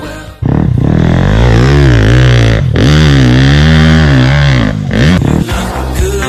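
Dirt bike engine revving up and down several times, its pitch rising and falling, with a brief break about halfway. It comes in loud just after the background song drops out and fades back under it near the end.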